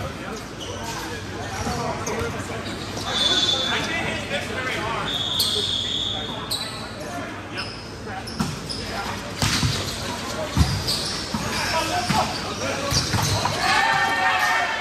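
Volleyball rally in a large echoing gym: sharp hits of the ball, several of them close together about two-thirds of the way through, with sneakers squeaking on the court floor and players calling out.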